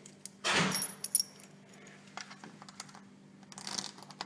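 A bunch of keys jangling and clicking against a door lock as a key is fitted into it, with a loud brief rush of noise about half a second in and another near the end.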